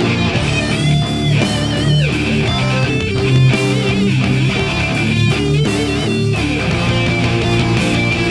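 Electric guitar played through an amplifier, a lead line of sustained notes with bends and vibrato, over a heavy rock backing track.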